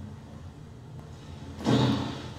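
A low, steady background hum with faint noise. A person's voice breaks in loudly near the end.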